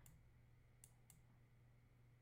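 Near silence over a low steady hum, broken near the middle by two faint computer mouse clicks about a quarter second apart.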